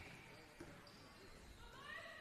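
Near silence: faint background of an indoor basketball court, with a light tap about half a second in.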